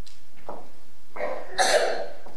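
A person coughing: a short cough about a second and a half in, its second part the loudest.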